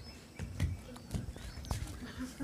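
Faint, irregular knocks and taps, a few about half a second apart, over low background room noise.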